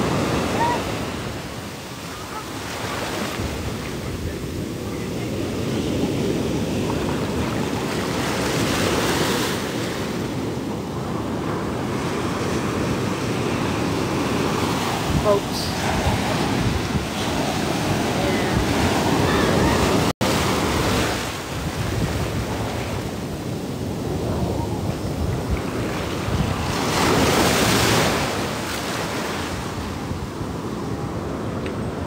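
Ocean surf breaking and washing up the beach close by, a continuous rush that swells louder with each set of breakers, several times over, with wind buffeting the microphone.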